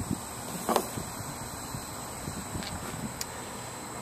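Quiet steady background hum with a few faint clicks and ticks, one brief sound about three-quarters of a second in.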